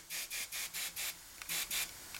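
Compressed air hissing in short bursts from a trigger-style tire inflator into a fat bike tire: four quick puffs, a pause, then two more near the end. He is topping up a newly seated tubeless tire that is slowly leaking air around its fittings.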